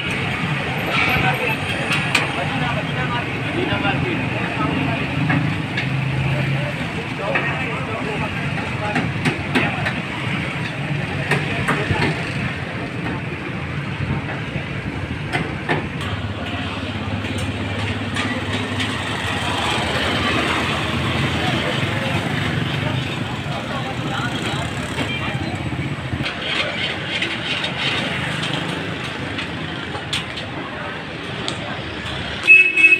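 Busy street ambience: steady road traffic running past, with voices talking in the background.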